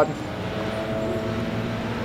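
Steady low mechanical hum with a faint higher steady tone, background ambience with no distinct events.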